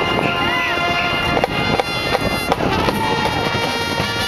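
Marching band playing on the field: brass holding sustained chords, with a few sharp drum strokes in the middle.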